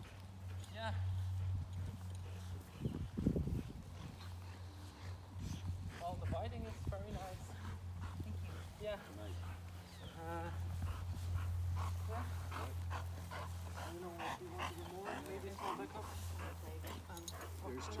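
A Boxer barking, mostly in the last few seconds, over a steady low hum and faint voices.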